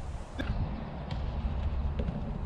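Low, steady rumble of wind on the microphone on an open grass course, with a single sharp click about half a second in.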